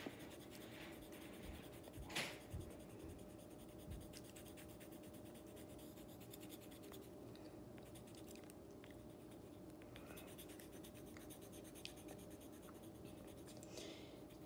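Faint scratching of a colored pencil shading on paper, with one brief louder tap about two seconds in.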